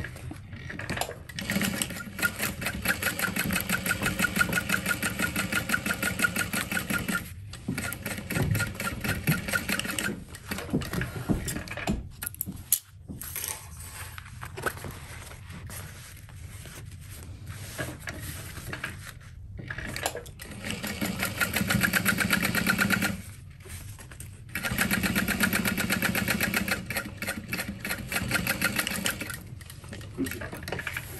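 Juki sewing machine stitching in three runs of a few seconds each: one starting about a second and a half in, two more near the end. Each run has a fast, even needle rhythm, with a quieter stretch of scattered small sounds in the middle.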